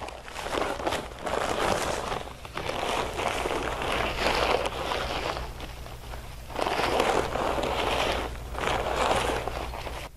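Dry mortar mix pouring out of paper bags into a steel mixer hopper: a rushing hiss in three long swells, with the paper sacks rustling.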